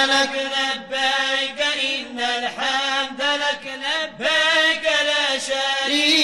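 Male voice chanting an Arabic Islamic nasheed in long, wavering phrases over a steady held drone note.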